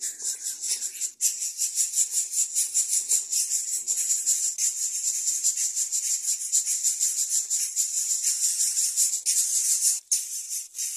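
Greater coucal nestlings begging at the nest with a steady, rapidly pulsing rasping hiss, a few pulses a second.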